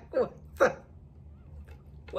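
The last two short bursts of a woman's laughter, both in the first second, each falling in pitch.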